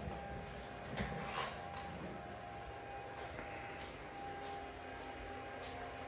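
Quiet room tone: a faint steady whine over a low hiss, with a few soft knocks.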